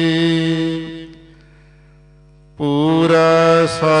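Sikh Gurbani hymn (shabad) sung in a chanting style: a held note fades out about a second in, a short pause with only a faint hum, then the voice comes back in on the next line, sliding in pitch, near the end.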